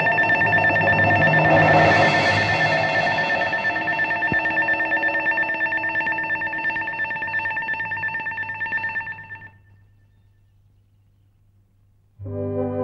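Film sound effect: a sustained electronic ringing tone with a fast, fluttering tremolo, with a hiss swelling about two seconds in. It fades out about nine and a half seconds in.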